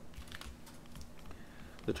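Faint, irregular clicks and taps of a stylus on a tablet screen as words are handwritten, over a faint steady hum.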